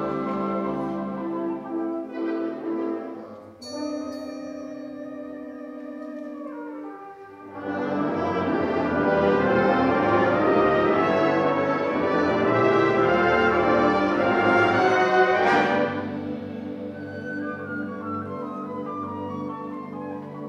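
Community concert band playing held chords in the brass and woodwinds. A high ringing stroke comes about four seconds in and starts a softer passage. The full band swells loud from about eight seconds, peaks in a sharp crash a little past fifteen seconds, and drops back to a softer held chord.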